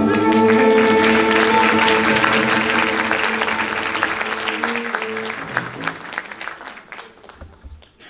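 The final held note of a female singer and Turkish classical ensemble (violin, cello, kanun) dies away as applause breaks out. The clapping then thins and fades out near the end.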